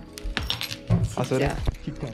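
Metal keys and key rings clinking against wooden key fobs as they are handled on a counter, over background music and voices.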